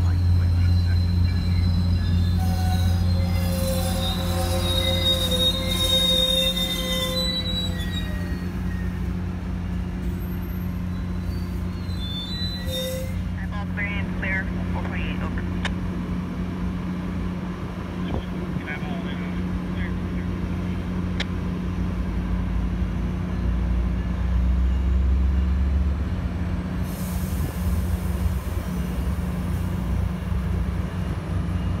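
Metrolink commuter train slowing into a station, its wheels and brakes squealing in high, wavering tones over the first several seconds. It then stands at the platform with a steady low hum from the diesel locomotive.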